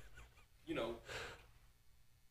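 Faint speech: two short, quiet utterances about half a second and a second in, with near silence between and after.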